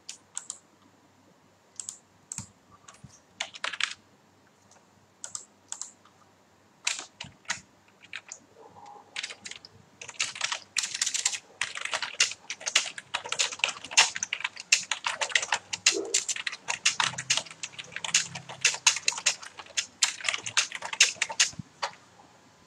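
Typing on a computer keyboard: scattered single keystrokes at first, then fast continuous typing from about halfway through.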